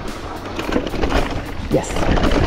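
Husqvarna Hard Cross 2 electric mountain bike rolling down a stony dirt trail: tyres and bike rattling and knocking over small rocks, over a steady low rumble.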